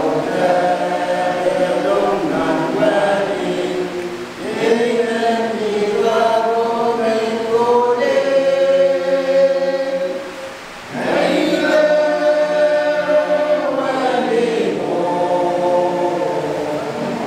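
A men's choir singing a hymn without instruments, holding long notes, with a brief drop for breath about ten seconds in.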